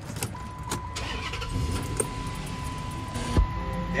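Chrysler 300's V6 engine being started: a low rumble builds, with a sharp jump in level about three and a half seconds in as it catches. A steady high tone sounds alongside from just after the start.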